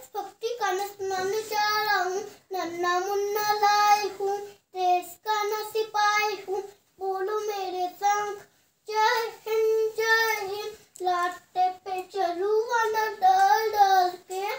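A young boy singing unaccompanied, in phrases of held notes with brief pauses for breath between them.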